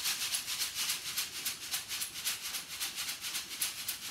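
Dried Sichuan pepper (Zanthoxylum piperitum) husks and seeds rattling in a wooden-framed sieve that is shaken back and forth in a quick, even rhythm. The shaking separates the fruit: the heavy round seeds drop through the mesh and the empty pericarps stay on top.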